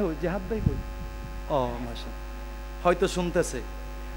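Steady low electrical hum from the microphone and amplifier system. Short fragments of a man's voice come through the microphones near the start, about a second and a half in, and about three seconds in, with a low thump just under a second in.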